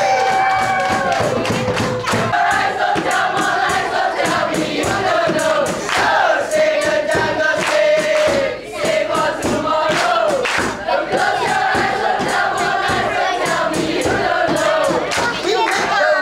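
A seated group singing a dikir barat in unison, loud and steady, the sung phrases rising and falling together, with hand claps running through it. There is a brief dip about halfway through before the singing picks up again.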